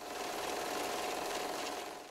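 Steady rushing noise with a faint hum under it, fading in and out over about two seconds: an edited transition sound effect under the title card.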